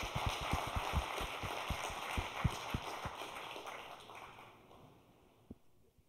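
Audience applauding, a dense patter of claps that dies away over the last couple of seconds.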